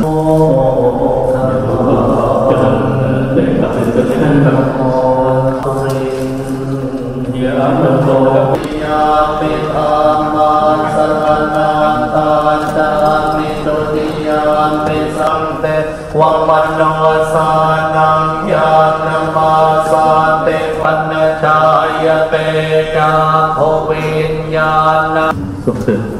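Thai Buddhist monks chanting Pali verses in a steady, droning monotone, the long held syllables carried on one pitch. About eight seconds in, the chant shifts to a higher, fuller pitch and holds it to the end.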